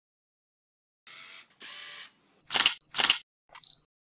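Camera shutter sound effect for a logo: two short whirring hisses, then two sharp shutter clicks about half a second apart, and a small click with a brief high beep near the end.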